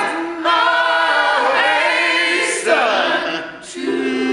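A church congregation singing a gospel song together, with long sliding notes. The singing dips briefly about half a second in and again near the end.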